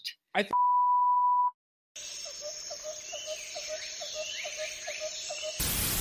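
A steady electronic beep at one pitch lasts about a second, then there is a brief gap. A quieter stretch of hiss follows with a regular ticking, about three or four ticks a second, and it ends in a short burst of noise.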